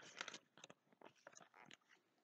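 Faint crackling and rustling of paper as a picture book's page is turned: a quick string of short crinkles that thins out towards the end.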